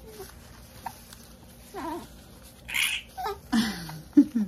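Young baby cooing: a few short, wavering coos, then a longer coo that falls in pitch near the end.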